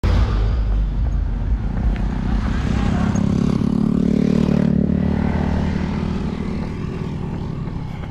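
Road traffic passing close: a dump truck's engine rumbling alongside at first, then motorcycle engines, their note swelling to its loudest about four seconds in and fading toward the end.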